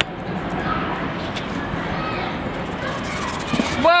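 Steady rushing noise of a person sliding fast down a steel slide, body and clothes rubbing along the metal chute, with faint voices in the background.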